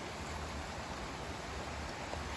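Steady outdoor background hiss with a low rumble underneath, with no distinct event.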